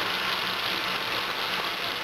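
A steady, even hiss with a faint low hum under it and no distinct events.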